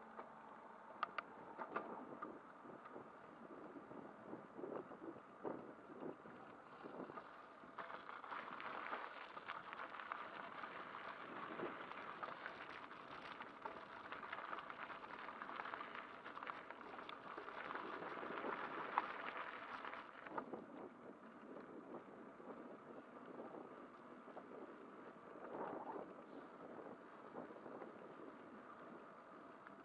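Bicycle tyres rolling along a path, heard from on the bike: a few sharp clicks and knocks near the start, then a louder crunching hiss from about eight seconds in as the tyres run over gravel. It eases back to a quieter rolling noise a little before the end, on smooth tarmac.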